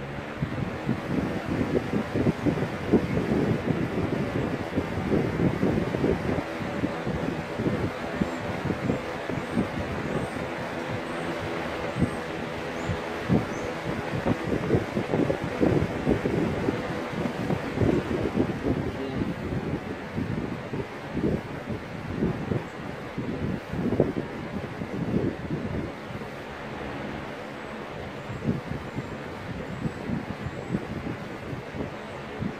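2004 Lasko Weather Shield box fan switched on, its motor coming up to speed in about the first second and then running steadily. Air from the blades gives a gusty rushing sound over a faint motor hum.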